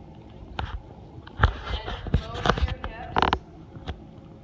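Irregular sharp thuds and slaps of a volleyball being handled and caught during a setting drill on a hardwood gym court, with a louder burst near the end.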